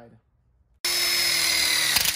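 Cordless impact driver driving a screw through a metal connector plate into a metal frame tube. The motor starts about a second in and runs with a steady high whine.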